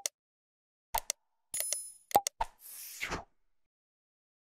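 Sound effects of a subscribe-button animation. A mouse click at the start, then quick pops about a second in, a bell ding with ringing overtones around a second and a half, another pop, and a short whoosh near three seconds.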